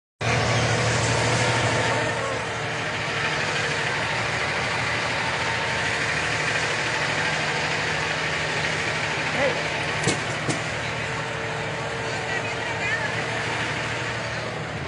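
Semi-truck tractor's diesel engine idling steadily close by, with a couple of sharp clicks about ten seconds in.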